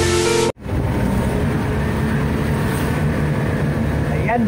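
Intro music cuts off abruptly about half a second in. It is followed by the steady engine and road noise of a vehicle being driven, heard from inside the cab.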